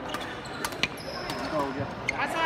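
Badminton rally on an indoor court: a few sharp knocks of rackets striking the shuttlecock and players' feet on the court floor, with a brief high shoe squeak a little after the middle.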